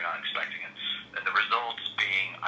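Speech only: a person talking, the voice sounding thin as if heard over a phone line.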